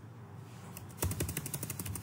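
Computer keyboard typing: a fast run of key clicks that starts about a second in.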